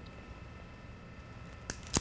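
Quiet room tone, then two short clicks near the end, the second louder and sharper, as a hand is worked free of a pair of handcuffs.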